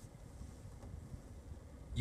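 Faint, steady low rumble of background noise inside a car's cabin, with no distinct event.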